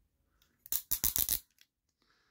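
Hard plastic toy joints clicking as a dinosaur robot figure's legs are folded back: a quick run of sharp clicks near the middle.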